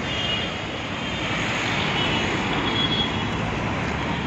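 Steady street traffic noise: the even rumble and hiss of passing road vehicles.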